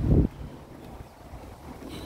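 Wind buffeting a phone microphone: a brief loud gust in the first quarter second, then a faint low rumble.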